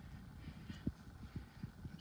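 Transmission fluid trickling faintly in a thin stream from the drain into a half-full drain pan, with a few soft low knocks.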